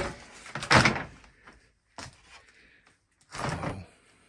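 A knock, then a louder scraping noise just under a second in, a click at about two seconds and a short scrape near the end: objects being moved or handled.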